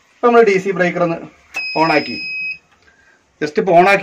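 A single steady high electronic beep, about a second long, from the solar power equipment as its DC breaker is handled, under a man talking.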